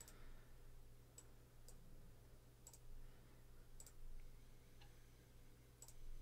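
Faint computer mouse clicks, about half a dozen spaced irregularly, over a steady low room hum.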